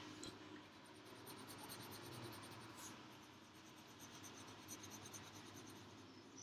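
Faint scratching of a colored pencil on paper, shading in a drawing.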